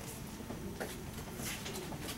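Quiet classroom room tone with a few faint footsteps, about one every 0.7 seconds.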